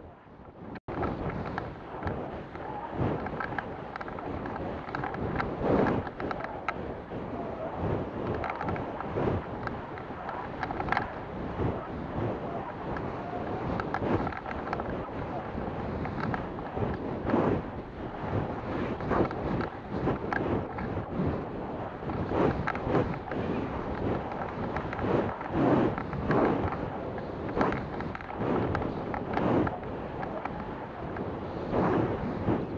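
Wind rushing over the microphone of a sports camera riding on a model rocket, cutting in abruptly just under a second in, then swelling and fading irregularly. The rocket is tumbling down after apogee ejection while a chute release holds its parachute bundled.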